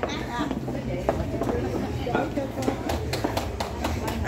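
Indistinct voices of people talking in a hall, with scattered sharp clicks, more frequent in the second half.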